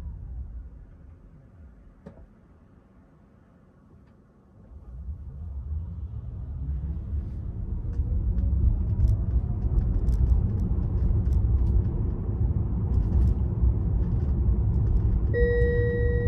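Inside a Tesla Model 3's cabin: nearly quiet while stopped at a red light, then a faint rising electric-motor whine as the car pulls away, building into steady tyre and road rumble. A short electronic tone sounds near the end.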